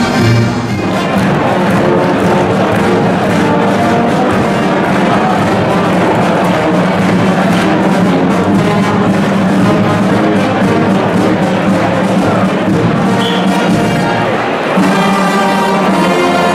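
A carnival brass band of trombones, trumpets, a sousaphone and a bass drum playing a loud, steady tune.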